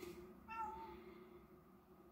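A single short meow from a cat about half a second in, faint under a low steady room hum.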